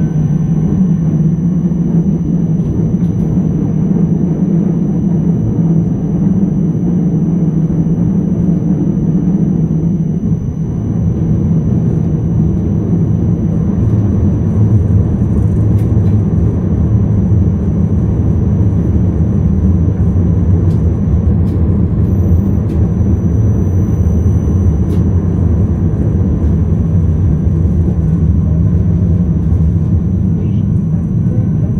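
Driver's-cab running noise of a Škoda RegioPanter electric multiple unit under way: a steady rumble with a low hum that drops lower about ten seconds in.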